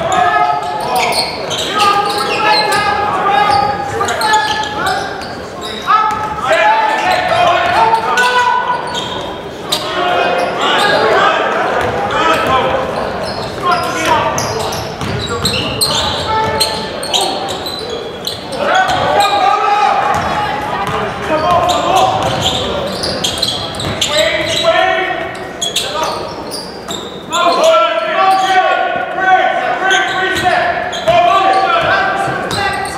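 Basketball game sounds in a large echoing gym: a basketball bouncing on the hardwood floor with players' and spectators' voices calling out throughout.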